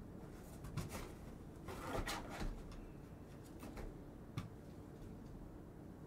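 Scattered light clicks and rustles of trading cards and plastic card holders being handled on a table, the loudest cluster about two seconds in.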